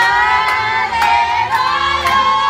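A group of voices singing together in long held notes.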